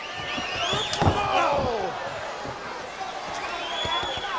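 A single sharp whack of a hit in the wrestling ring about a second in, over an arena crowd yelling.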